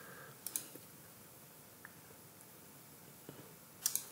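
A handful of faint, scattered computer mouse clicks over quiet room tone.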